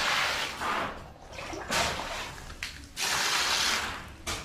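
Water from a hose splashing onto a heap of gravel, wetting the aggregate for a concrete mix. It comes in three surges with quieter gaps between.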